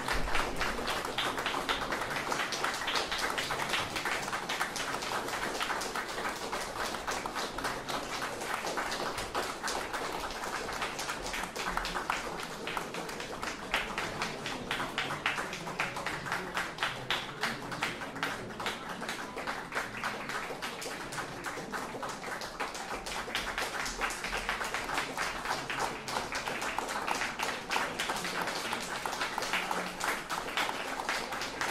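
A small audience applauding steadily, a dense patter of individual hand claps with no break.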